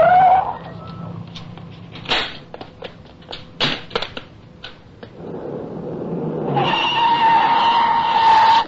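Car chase sound effects in a radio drama: a short tire squeal at the start, then a run of sharp knocks and bangs. Near the end a car comes up and a long, steady tire screech follows.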